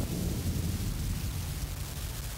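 Closing moments of an abstract electronic track: a deep low sound under a steady wash of hiss, slowly fading.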